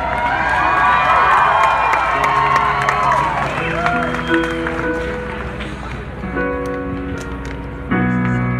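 Live band intro: sustained keyboard chords held and changing slowly, with a crowd cheering and whistling over the first few seconds, dying away about halfway through.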